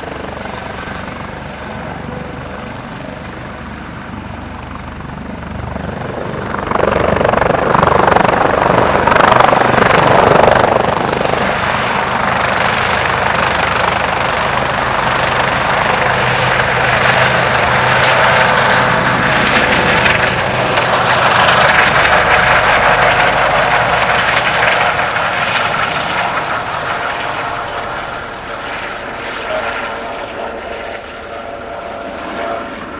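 Helibras HM-1 Panthera (Eurocopter AS565 Panther) military helicopter, turbines and fenestron tail rotor running as it hovers low. It grows much louder about seven seconds in as it comes close and lifts off, stays loud, then fades near the end as it climbs away.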